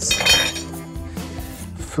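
Background music with a steady held chord, and right at the start a sharp metallic clink that rings for about half a second, as of a metal tool or part set down on the workbench.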